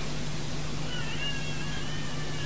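Steady hiss with a low hum from the microphones and sound system, with a faint, wavering high tone coming in about halfway through.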